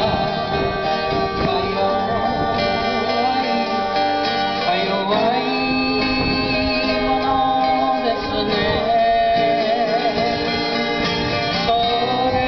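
Live acoustic band: a woman sings held, wavering melody notes over several acoustic guitars playing chords.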